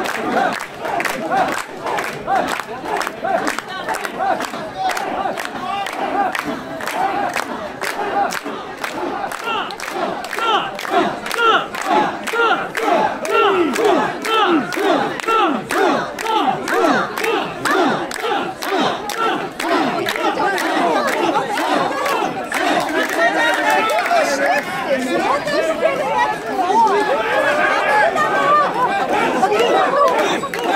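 A large crowd of mikoshi bearers shouting a rhythmic carrying chant in unison while shouldering a portable shrine, many voices on a quick, steady beat.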